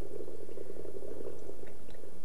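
Liquid bubbling with a steady low rattle that fades a little near the end.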